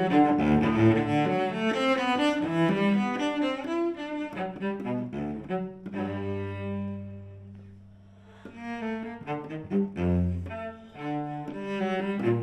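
Solo cello played with the bow: a quick run of notes, then a long low note held for about two seconds and left to fade almost away, before the playing picks up again with another low note near the end.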